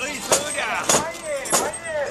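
Brass ring handles on a portable shrine (mikoshi) clanking in a steady rhythm, about one clank every 0.6 seconds as it is bounced on the carriers' shoulders, under a crowd of carriers chanting.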